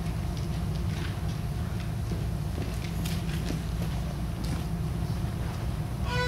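Steady low room hum with scattered light knocks and rustles as a metal music stand is adjusted and sheet music is handled.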